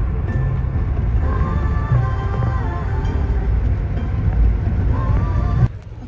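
Road noise inside a moving car's cabin, a steady low rumble, with music playing faintly over it. Both cut off suddenly near the end.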